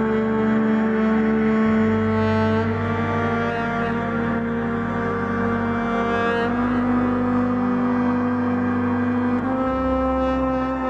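Background music of slow, long-held low notes in chords, the harmony shifting every few seconds.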